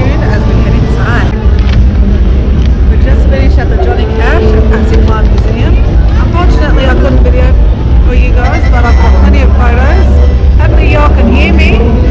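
A woman talking over loud street noise with a heavy, steady low rumble.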